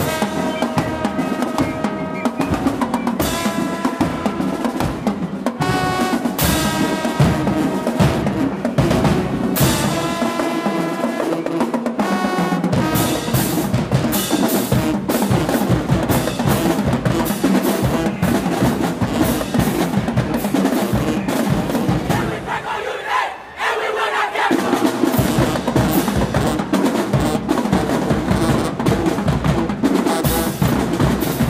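High school marching band playing: sousaphones, trombones and clarinets over snare drums, bass drums and crash cymbals. The sound drops briefly a little past the three-quarter mark, then comes back.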